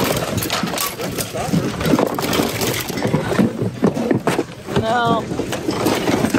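Busy store hubbub: many voices chattering in the background, with frequent knocks and clatter of items. A short wavering, sing-song voice sounds about five seconds in.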